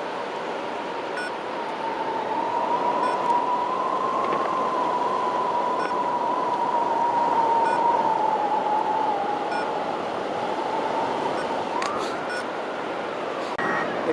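Wind rushing over the camera on a hang glider in flight, with a steady high whistle-like tone that slowly wavers in pitch and glides upward near the end.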